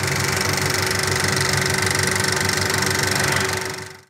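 Bauer 35 mm cinema film projector running: the steady, fast, even clatter of its intermittent mechanism and sprockets over a motor hum. The sound fades out at the end.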